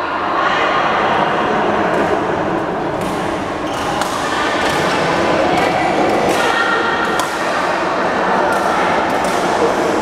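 Echoing hubbub of a busy badminton hall: many players' voices mixing together, broken by sharp racket strikes on shuttlecocks every second or two.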